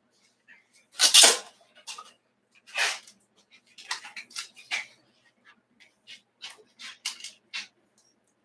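Adhesive tape being pulled off its roll and laid down: a loud rip about a second in, another near three seconds, then a run of shorter rips and scuffs as it is pressed along the rim of a table form.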